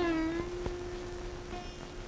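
Film background music: a single plucked-string note struck sharply, bending slightly in pitch at its start, then held and fading away over two seconds, with a faint higher note near the end.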